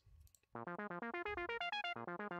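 Software synthesizer playing a fast arpeggio generated by Cubase's Arpache SX arpeggiator from three held notes. It starts about half a second in as an even run of about eight notes a second, stepping up and down across several octaves.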